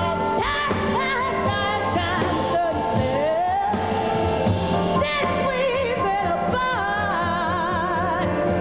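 Female jazz vocalist singing live over a piano, bass and drums trio, with sliding and held notes that carry a wide vibrato.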